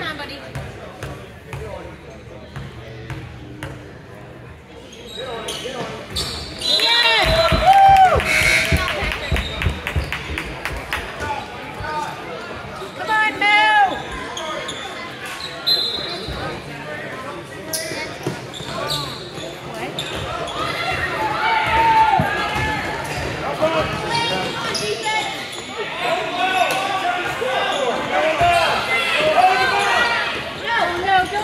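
A basketball bouncing on a gym court, with spectators' voices and shouts in a large echoing gym; the noise gets louder about seven seconds in.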